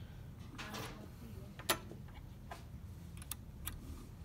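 Small metal clicks and a short scrape as a key blank is fitted into the clamp jaw of a key-cutting machine. There are a few light clicks, the loudest a little before halfway.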